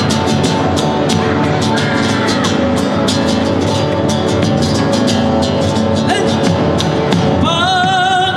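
Live Argentine folk band playing a zamba: guitar strummed in a steady rhythm. A voice starts singing with vibrato near the end.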